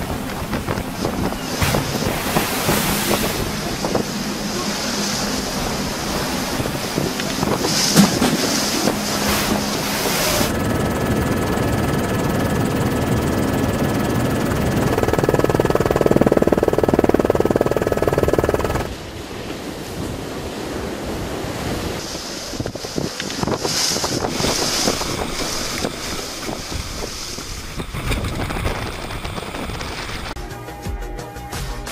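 Storm wind buffeting the microphone over heavy seas breaking and churning, in a run of clips that cut abruptly from one to the next. Through the middle a steady two-note mechanical hum sits under the surf noise, then cuts off suddenly and the sound drops to a lighter wind and water noise.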